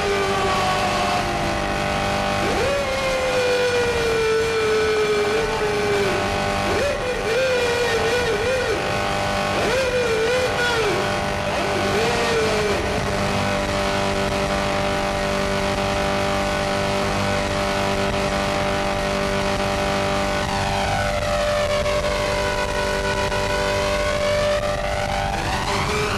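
Harsh electronic noise music: a dense, steady wall of distorted drone with a wavering, sliding tone through the first half and a sweeping, phasing sound over the last few seconds.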